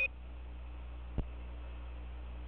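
Open radio link of the Apollo air-to-ground voice loop between transmissions: steady hiss with a low hum, and a single click a little over a second in.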